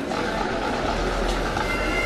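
A pipe band's bagpipes come in on steady held notes near the end, over a steady rushing noise.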